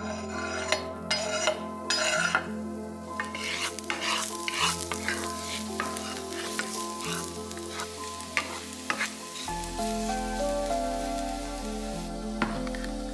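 Chopped garlic sizzling in hot oil in a frying pan while a wooden spoon stirs it, with a crackle of small pops throughout. It opens with a few sharp scrapes and clatters in the first two seconds as the garlic is slid off a wooden cutting board into the pan.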